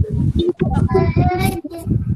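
A young child's voice in a sing-song manner, heard through a video call's audio, with a steady low rumble beneath it.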